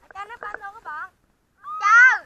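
A child's high-pitched voice calling out in short bursts, then a louder, longer cry that rises and falls in pitch near the end.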